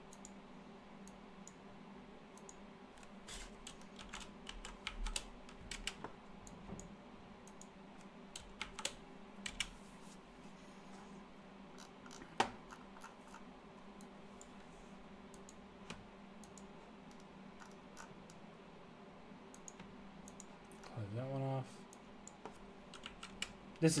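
Computer keyboard typing in scattered short runs of clicks, over a faint steady hum.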